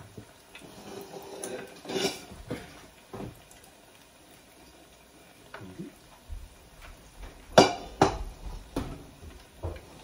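Metal kitchenware, a spoon and a stainless steel pot, clinking and knocking in scattered separate knocks. The loudest pair comes about seven and a half to eight seconds in.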